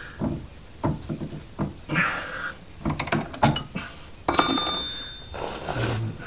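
An open-ended spanner working on a car's steering track-rod end, giving a run of small metal clicks and knocks. About four seconds in comes one sharper metallic clank that rings briefly.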